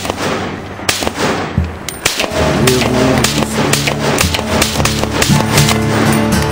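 Rifle shots, the loudest about a second in, cutting through a country song with guitar and a steady beat. The song comes back fully about two seconds in.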